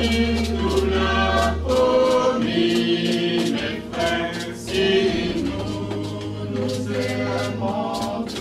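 A small mixed choir of men and women singing together, with notes held for about a second each.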